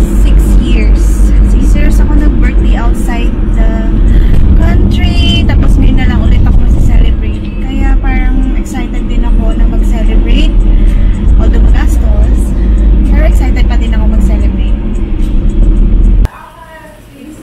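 A woman's voice singing along with music inside a moving car's cabin, over a heavy, steady low rumble of road and engine noise.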